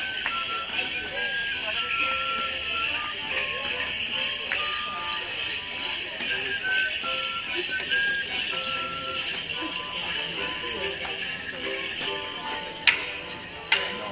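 Live folk tune played for a Border Morris stick dance, with a steady jingle over the melody, typical of dancers' bells. Sharp clacks of wooden sticks struck together come near the end.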